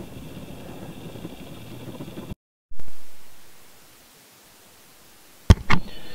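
Steady low hiss of background noise on the microphone, broken by an abrupt cut to silence about two seconds in. A loud low bump follows and fades away over about a second, then fainter hiss, with a sharp click near the end.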